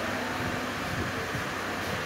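Steady background noise: an even hiss with a faint low hum and no distinct event.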